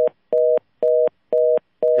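Telephone fast-busy (reorder) tone on the phone line: a two-note tone beeping steadily about twice a second, the sign that the caller's line has been disconnected.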